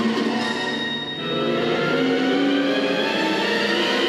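Routine accompaniment music with sustained instrumental tones; it thins and dips briefly about a second in, then fills out again.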